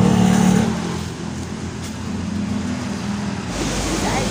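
A motor vehicle's engine running with a steady low hum that fades after about a second. Near the end the background noise changes abruptly.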